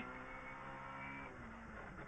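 Opel Adam R2 rally car's engine running under way, heard faintly and muffled in the cabin with a steady tone that fades a little toward the end.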